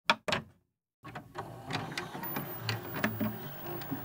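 Two sharp clicks, then after a second of silence a run of small mechanical clicks and ticks over a faint low hum: a VHS videocassette recorder's buttons and tape mechanism at work.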